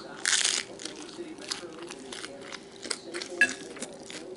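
Close-up chewing of a crunchy taco: wet mouth clicks and crunches, with one louder, longer crunch near the start and a sharp click about three and a half seconds in.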